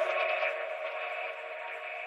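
The closing tail of an electronic trap track. A sustained chord is held without bass or beat and fades out gradually.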